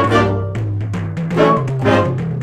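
A jazz band with trumpets, trombones and saxophone playing together over bass and piano, the horns swelling into chords near the start and again toward the end.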